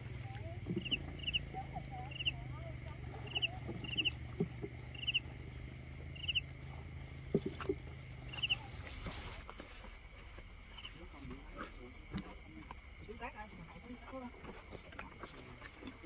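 Small frogs calling at night: short rasping chirps, roughly one a second for the first six seconds, with a last one near eleven seconds. A low steady hum runs under them and stops about halfway.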